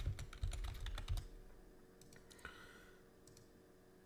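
Typing on a computer keyboard: a quick run of key clicks that stops about a second in, followed by a few scattered single clicks.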